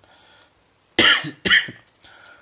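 A man coughing twice, about half a second apart, both coughs louder than his speech.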